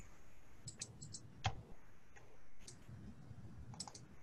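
A handful of faint, irregular clicks from someone working a computer, over low room noise; the loudest comes about one and a half seconds in.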